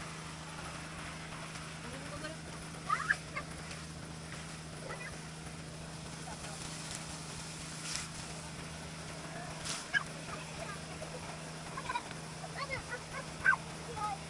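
Water gushing steadily from a black pipe onto the dirt, over a steady low hum. A few brief high-pitched cries cut in about three seconds in and again near the end.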